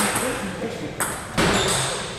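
Table tennis balls clicking off bats and tables, with two sharp hits about a second in, over voices.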